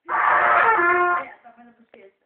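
A toddler blowing into a trumpet: one loud, breathy blast lasting about a second, its pitch wavering, then dying away.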